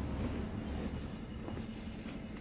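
A faint, steady low rumble with no distinct events.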